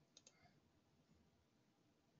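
Near silence broken by three faint computer keyboard clicks close together at the start.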